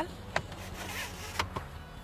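Retractable cargo-area cover in a Subaru Crosstrek being handled: a click, a soft sliding rustle of the cover, then a second click about a second later.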